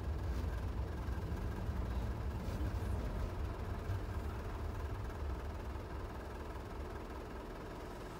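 Inside the Asa Kaigan Railway's dual-mode vehicle (a converted minibus), the diesel engine and running gear give a steady low rumble as it rolls slowly in rail mode. The rumble eases a little near the end as the vehicle slows.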